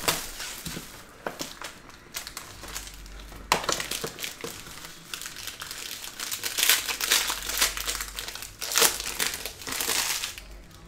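Clear plastic shrink-wrap being torn off a trading-card box and crumpled in the hand: a continuous, irregular crinkling and crackling, with louder bursts a few seconds in, around two-thirds of the way through and near the end.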